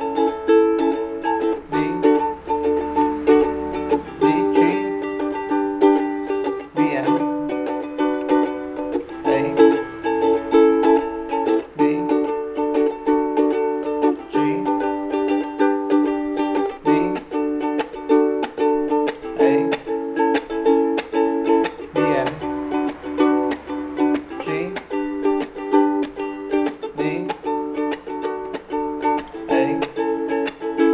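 Ukulele strummed in a steady rhythm, cycling through a repeated Bm–A–D–G chord progression, the chord changing about every two and a half seconds.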